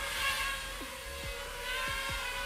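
HGLRC Rekon 5 FPV quadcopter's motors running at a distance: a faint, steady, high-pitched hum that wavers slightly in pitch. The motors are quiet for a quad of this class.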